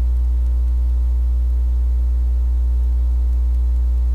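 Steady electrical mains hum: a loud low drone with fainter higher tones stacked above it, unchanging throughout.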